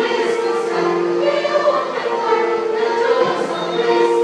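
A mixed church choir of women and men singing together in parts, holding long notes.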